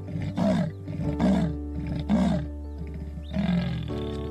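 Leopard's rasping sawing call: about four hoarse, dropping grunts spaced roughly a second apart, the last a little after three seconds in. Soft background music plays underneath.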